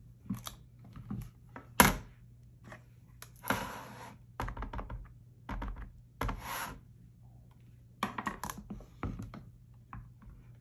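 Clicks, taps and knocks of a plastic stamp-positioning tool, its magnets and a stamp being handled, with one sharp knock about two seconds in. Two brief scuffing passes as an ink pad is pressed and rubbed over the stamp.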